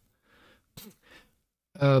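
Mostly near silence: a man's soft sigh and a short vocal sound, then a hesitant "euh" near the end.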